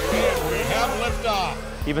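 A racing quadcopter's electric motors and propellers whining as it flies past, the pitch wavering up and down with throttle and passing, over background music.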